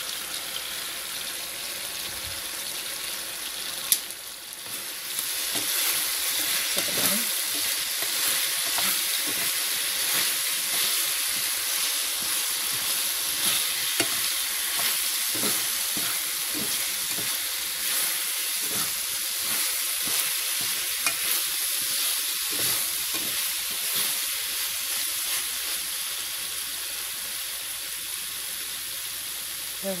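Sauced chicken pieces sizzling in a nonstick frying pan while a slotted spatula scrapes and turns them. A sharp knock comes about four seconds in; after it the sizzle grows louder and the stirring strokes come thick and fast.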